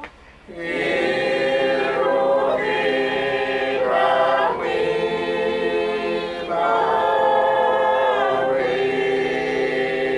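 A congregation singing a hymn a cappella in several voices, with long held chords in phrases. There is a short pause about half a second in before the singing resumes.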